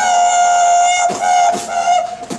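Beatboxing in a dubstep style: one long buzzy vocal note held steady for about a second, then shorter repeats of it punctuated by mouth-made kick-drum thumps.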